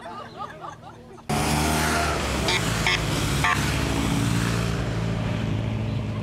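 Police escort motorcycles passing close by. The engine noise jumps up suddenly about a second in, with three short high blips in the middle, and fades slowly near the end.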